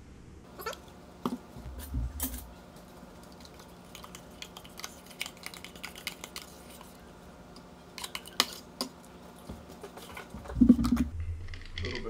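Clicks, taps and knocks of plastic food containers and lids being handled on a kitchen counter, over a steady low hum that stops a couple of seconds before the end. A louder thump comes near the end.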